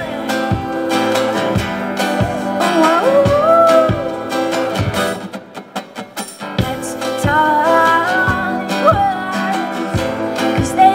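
A woman singing live into a microphone over her own strummed guitar, her voice coming and going between phrases with a short lull in the middle.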